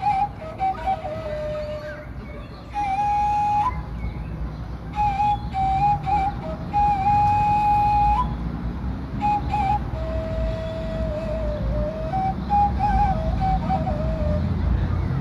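A flute-like wind instrument playing a slow solo melody of long held notes, with quick trills and ornamental turns between them. Some held notes end with a brief upward flick in pitch. A steady low rumble runs underneath.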